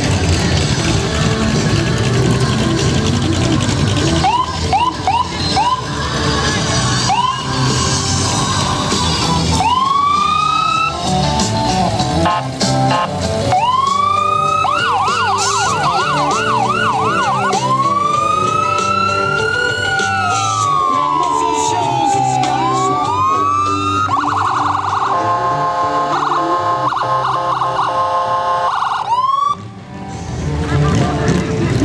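Emergency vehicle siren sounded in a parade, run through several patterns: short whoops, a fast warbling yelp, a long rising and falling wail, and a rapid pulsing tone near the end. Music from a float's loudspeakers plays under it at first.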